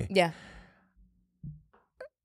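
A spoken "yeah" trails off into a breathy sigh. Near silence follows, broken by a brief low hum of a voice about one and a half seconds in.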